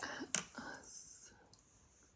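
A woman whispering softly, breathy and hissy, fading out after about a second and a half.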